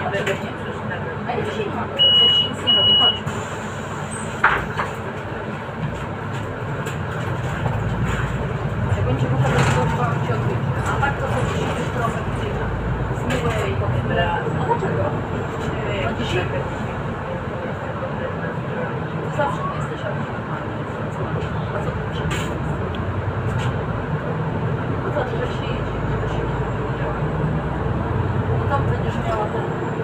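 Cabin noise of a Solaris Urbino 8.9 city bus driving along a street: steady drivetrain and road rumble that grows louder about six to ten seconds in as the bus picks up speed. Two short high beeps sound about two seconds in.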